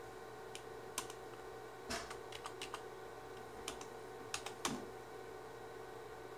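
Keys pressed on a computer keyboard: about a dozen short clicks in small irregular clusters, typing into a text-entry field.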